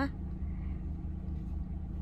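Low, steady rumble of a car, heard from inside the cabin.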